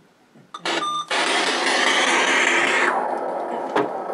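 Electronic radio static from a ghost-hunting spirit box, starting about a second in after a brief beep-like tone and running as a loud, even hiss, with a click near the end.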